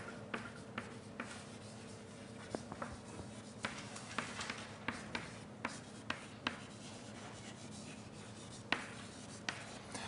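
Writing on a board: faint, irregular taps and short scratches as the words and symbols go up, over a steady low room hum.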